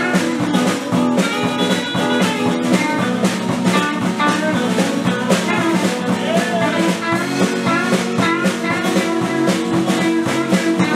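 Band playing a country-rockabilly song on electric guitar, acoustic guitar and drum kit, with a steady drum beat throughout.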